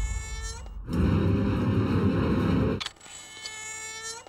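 Horror-film trailer sound effects: a ringing high tone with many overtones fading away, a loud low rushing burst from about a second in that lasts about two seconds, then the ringing tone again.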